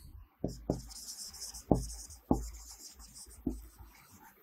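Marker pen writing on a whiteboard: a string of rubbing strokes, with several light knocks of the pen tip against the board as the letters are formed.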